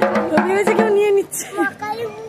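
A child striking a dhak, the Bengali barrel drum, with thin sticks in a few uneven strokes, under louder voices talking over it.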